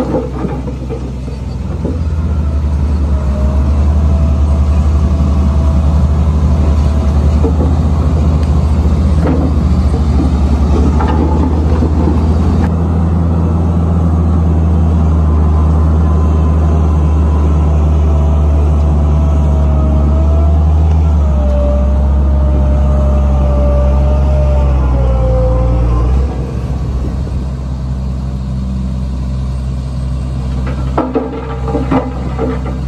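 Heavy diesel engine of earth-moving machinery running hard and steadily, with a faint whine that slides in pitch. The revs drop off about 26 seconds in.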